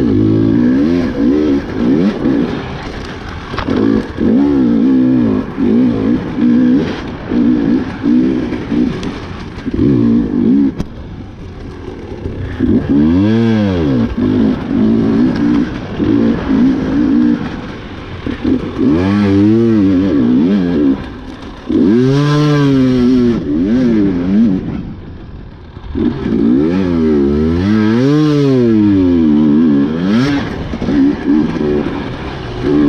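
Husqvarna TE 300 two-stroke enduro motorcycle being ridden hard, its engine revving up and falling off over and over as the throttle is opened and closed. The second half holds several big rises and drops in pitch.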